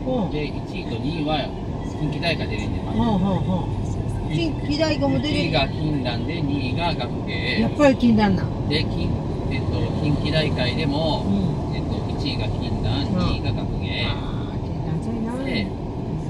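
People talking inside a car moving at expressway speed, over steady road and tyre noise.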